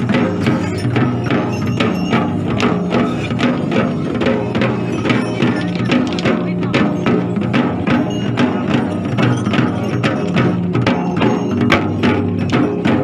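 Several large hand-held frame drums beaten together in a quick, even beat, with a steady low murmur of voices or singing underneath.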